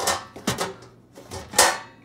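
Metal cookware clattering as a stainless steel bowl and tray are shifted about inside a kitchen cabinet: several sharp clanks, the loudest near the end.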